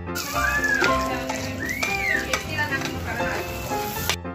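Minced garlic frying in butter in a steel wok, sizzling steadily while a metal spatula stirs it. Two short high cries that rise and then fall sound over the sizzle, the first about half a second in and the second near two seconds in.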